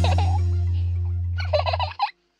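Music ends on a long, fading low held note. About a second and a half in, a short burst of rapid, chattering animal-like calls comes in and stops abruptly.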